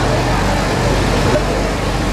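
Tractor engine running steadily as it tows a parade float, with crowd voices mixed in.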